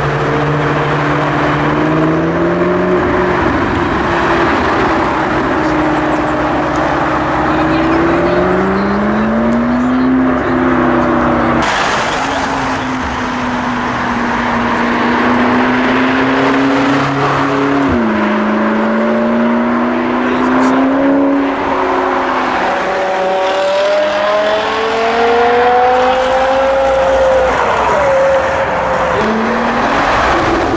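Supercar engines revving hard as the cars accelerate past one after another, the engine note climbing in pitch through the gears several times with sudden drops at the shifts.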